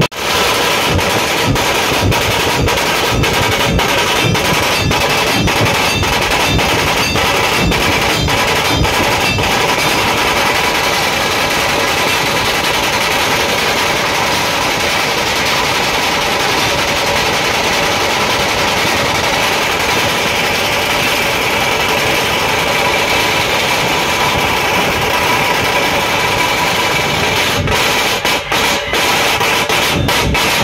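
A massed dhol-tasha drum troupe plays a loud, fast, continuous rhythm of rapid strokes on many large barrel drums (dhol), with a brief break in the beat near the end.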